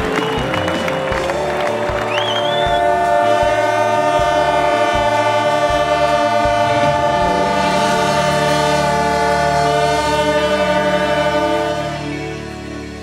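Music: a long, held, horn-like chord over a pulsing bass line.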